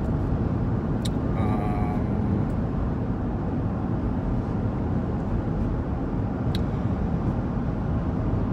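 Steady road and engine rumble heard inside the cabin of a moving SUV, with two faint sharp clicks, one about a second in and one near the end.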